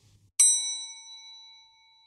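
A single bright bell-like ding about half a second in, ringing out and fading away over about a second and a half.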